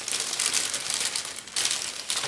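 Plastic kit packaging crinkling as it is handled, a continuous run of small crackles with a brief lull about one and a half seconds in.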